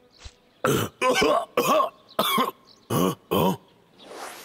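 A cartoon bear with a cold coughing hoarsely, six rough coughs in quick succession.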